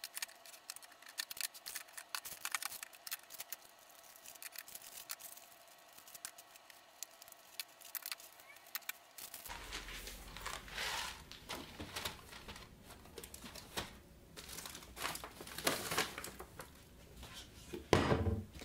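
Tins and food packets being handled and moved on a kitchen cupboard shelf: many small clicks and knocks with packaging rustling. About halfway a low hum comes in and the rustling grows louder.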